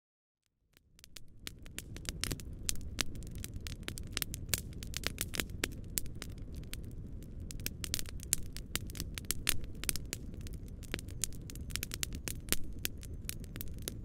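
Wood campfire crackling, with many sharp irregular pops over a steady low rumble; it fades in about a second in.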